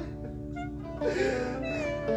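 Soft guitar music with steady held notes; about a second in, a man breaks into a loud anguished sob, a wavering crying wail.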